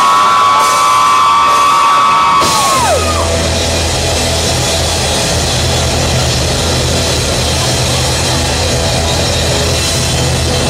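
Live rock band's opening intro. A held high note slides down in pitch and stops about three seconds in, and a steady low droning tone carries on beneath a wash of noise.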